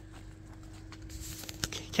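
Quiet yard background with a faint steady hum, and a few soft knocks near the end: the hoof steps of a cow walking on concrete.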